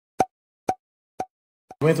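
Short popping sound effects, evenly spaced about two a second: four quick plops, each with a brief pitched ring, in otherwise dead silence, the last one faint. A woman's voice begins just at the end.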